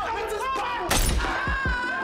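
A single sudden loud bang or crash about a second in, over voices and dramatic score, followed by a held high tone and deep falling booms.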